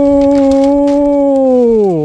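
A man's voice holding a long, loud, drawn-out 'yuuu', the last syllable of 'Man U' (แมนยู), steady in pitch and sliding down at the end.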